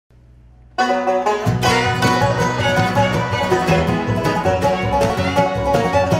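Live bluegrass band opening an instrumental intro, banjo prominent over guitar and upright bass. After a faint low hum, the music starts suddenly under a second in, and the low end fills out about half a second later.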